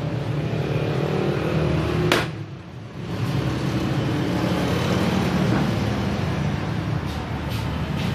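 A single sharp knock of a green coconut and machete against a wooden chopping block about two seconds in, with two lighter knocks near the end, over a steady low engine-like rumble.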